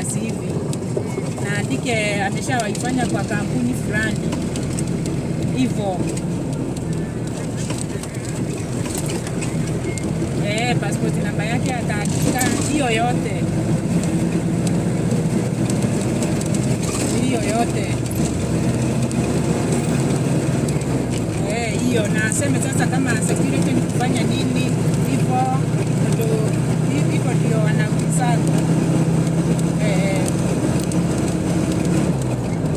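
Steady drone of a moving road vehicle's engine and tyres heard from inside it, with indistinct voices talking under it.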